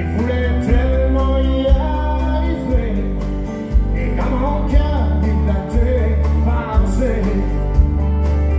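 Live country band playing a song: a male singer over strummed acoustic guitars, bass and drums, with a steady beat hit about once a second.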